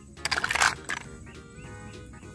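Background music with steady held notes. Early in the first second, a brief rush of hissing noise is the loudest sound.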